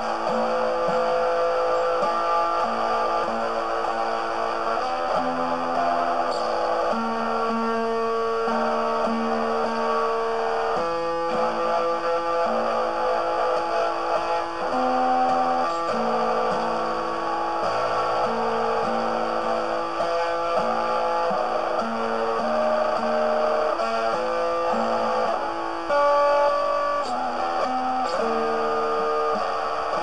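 Instrumental music led by guitar, a line of held notes changing every second or so, with no singing.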